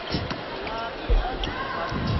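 Indoor volleyball arena ambience: crowd murmur and faint distant voices, with one dull thud of a ball being struck about a second in.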